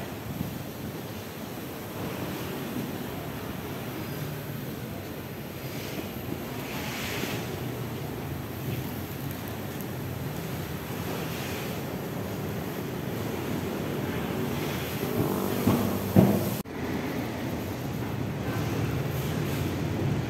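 Steady machinery noise, a continuous rush with a low hum, with a brief louder patch about fifteen to sixteen seconds in and an abrupt break just after.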